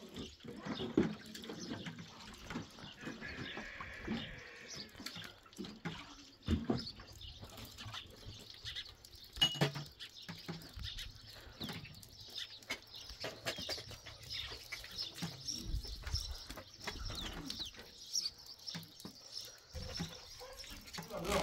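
Washing up by hand: water pouring and dripping, with scattered clinks and knocks of dishes and plastic jugs being handled. Occasional animal calls.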